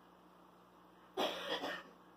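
A person coughing: a short burst of two or three quick coughs lasting under a second, about a second in.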